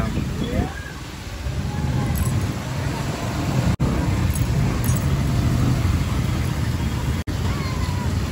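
A motorcycle engine running steadily on the move, over general road traffic noise. The sound cuts out for an instant twice.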